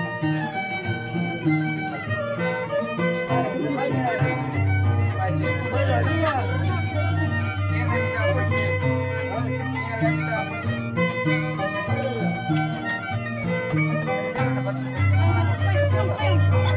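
Andean harp and violin playing a traditional tune together. The harp's plucked bass notes come through strongly under the melody.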